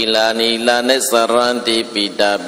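A Buddhist monk's voice chanting into a hand-held microphone, a loud sing-song recitation moving between a few held pitches.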